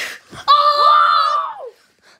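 A child's high-pitched scream, held steady for about a second and falling away at the end, voicing a plush toy character in play.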